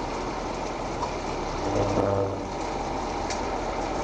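Steady noise of vehicle engines running at a roadside traffic stop, with a faint brief pitched sound about two seconds in.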